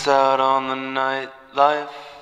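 A man's deep voice holding one long sung note alone after the band stops, then a shorter second note that fades away.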